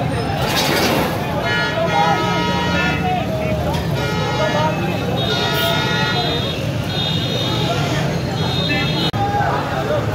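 A crowd of men shouting and talking over one another, with a vehicle horn sounding in two long steady blasts, the first about a second and a half in and the second about five seconds in.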